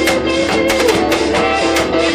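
Live band playing an instrumental break: electric guitar, keyboard and drums with sustained lead notes over a steady beat of about four strikes a second.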